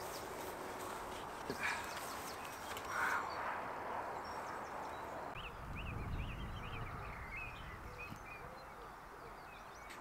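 Outdoor ambience: a steady hiss with a run of short, high bird chirps through the middle, and a brief low rumble about six seconds in.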